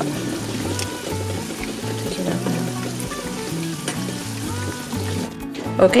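Background music over chicken wings deep-frying in corn oil, a steady sizzle. The sizzle cuts off about five seconds in.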